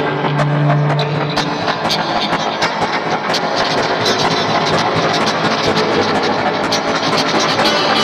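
Two guitars playing together, unmixed and panned hard left and right, with a steady run of picked and strummed note attacks. A low note is held briefly near the start.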